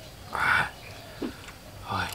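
A brief, noisy mouth sound made while eating, about a third of a second long, followed by a faint short low sound.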